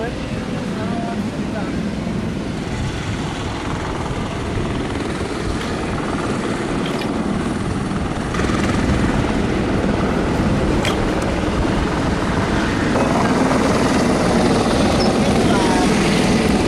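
Steady, loud helicopter turbine noise from aircraft running on an airport apron. It has no clear rhythm and gets louder about eight seconds in.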